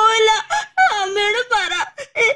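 A girl wailing and sobbing loudly in a high-pitched voice, about four drawn-out cries broken by short catches of breath.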